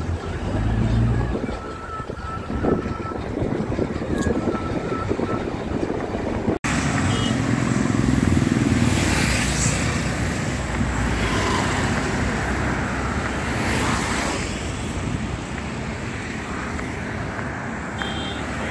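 Wind noise on the microphone with surf for the first six seconds or so. After a sudden cut, road traffic: motorcycles, scooters and cars passing by, with louder passes a couple of seconds after the cut and again near the middle.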